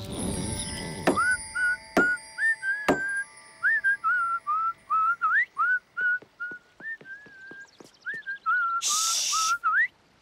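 A bouncy tune whistled by one whistler, quick notes with little upward slides. A few sharp taps sound in the first three seconds, and a short hiss comes near the end.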